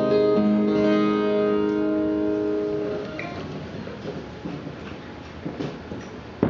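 A guitar chord left to ring, with another note added just after the start, dying away about three seconds in; after that only faint stage noise and a few soft knocks.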